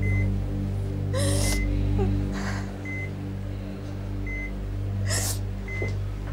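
Soft, sustained background music over a hospital patient monitor beeping once about every second and a half. A woman sobs, with three breathy gasps.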